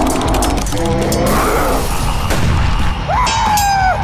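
Frantic computer-gaming sound effects: rapid clicks and gunfire-like bangs over music, with a gliding tone about three seconds in.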